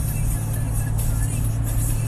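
Music playing inside a moving vehicle's cabin over a steady low drone of engine and road.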